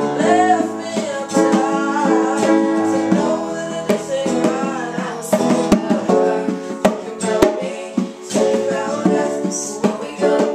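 Acoustic band cover of a pop song: strummed acoustic guitar and a grand piano with bongos, and a voice singing the melody over them. Now and then a sharp tap stands out.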